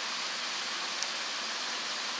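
Steady background hiss, with one faint click about a second in.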